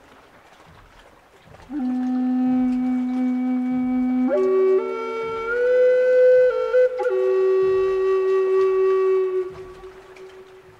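Bass Native American style flute in B, made of maple, playing a slow melody. After about two seconds of quiet it sounds a long low note, steps up to higher notes around the middle with a brief break, then settles on a long held note that fades out near the end.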